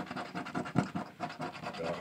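Rapid, repeated scratching strokes as the coating is rubbed off a paper scratch-off lottery ticket on a hard table.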